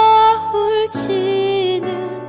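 A female voice singing a slow, tender ballad over soft instrumental backing. It holds a long note, then starts a new phrase with a slight waver about a second in.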